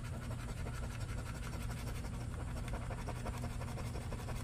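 Metal-rimmed scratcher coin scraping the latex coating off a lottery scratch-off ticket in a quiet, steady run of short strokes, over a faint low hum.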